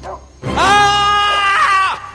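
A man's loud, high-pitched scream, beginning about half a second in and held steady for about a second and a half before cutting off.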